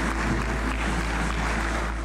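Audience applauding, a dense steady clapping, over a low music bed.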